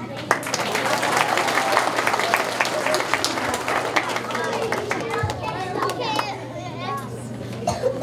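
Audience applauding, a dense patter of claps that thins out after about five seconds, with children's voices and chatter in a large hall.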